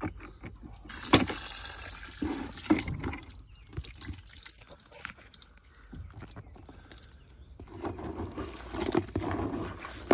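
Carp bait being made up in a bucket: liquid and small seeds poured from a plastic jar onto soaked tiger nuts, with splashing and irregular rattling clicks, loudest in the first few seconds. Toward the end a hand stirs the wet mix.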